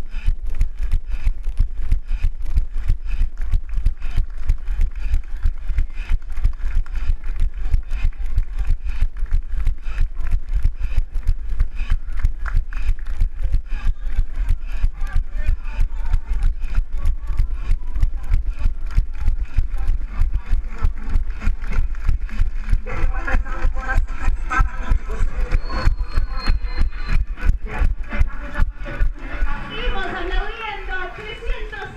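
Running footfalls on asphalt jolting a handheld camera, a steady rhythm of about three strides a second over a low rumble on the microphone. Voices and crowd chatter come in during the last several seconds.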